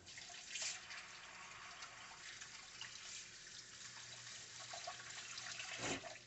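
Kitchen tap running while hands are washed under it, a steady hiss of water that stops near the end.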